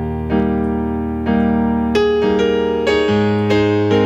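Keyboard music with no singing: slow held chords, each new one struck roughly once a second.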